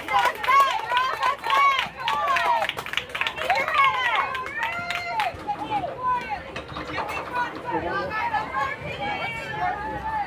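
Young softball players' high-pitched voices shouting and cheering over one another, loudest in the first few seconds and easing off toward the end.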